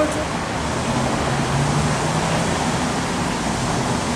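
Steady downtown traffic noise with the low hum of a vehicle engine that rises slightly mid-way and then settles.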